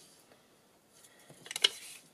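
Paper and thin cardstock handled on a tabletop: a quiet start, then a short dry rustle with a few small clicks and one sharp tap about a second and a half in.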